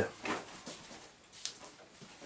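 Faint handling noise: light rustling and a few soft knocks as a large 1/5-scale Losi DBXL 2.0 RC desert buggy is lifted and carried by hand.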